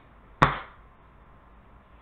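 A single sharp hand clap about half a second in, dying away quickly, then quiet room tone.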